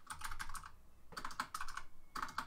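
Typing on a computer keyboard: two quick runs of keystrokes with a short pause between them.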